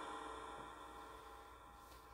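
Faint, steady electronic hum of several thin tones from a phone's spirit-box app between its words, slowly fading.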